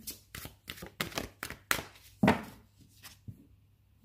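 Oracle card deck shuffled by hand: a quick run of card flicks and slaps, the loudest a little after two seconds in, then the handling dies down.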